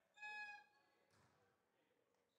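A single short, faint steady tone with overtones, about half a second long, just after the start: a game signal in the basketball hall during a stoppage in play. It is followed by near silence.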